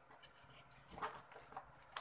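Faint crinkling of plastic wrap and rubbing of foam packing, in small irregular crackles, as a wrapped unit is worked loose inside a cardboard box.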